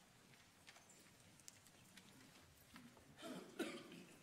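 Near silence in a large hall, with faint scattered small clicks, and then a short cough from someone in the audience about three seconds in.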